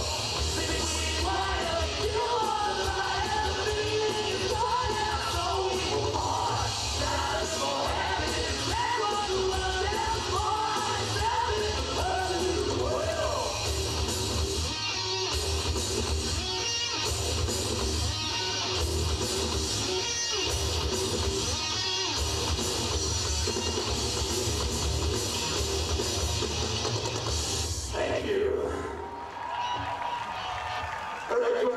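A heavy metal band playing live through a PA: distorted electric guitars, bass and drums, with a singer's voice over them. The song stops about two seconds before the end.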